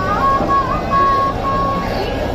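The steady din of a large street crowd, with a shrill, thin melody of held high notes and short sliding pitch bends over it that stops shortly before the end.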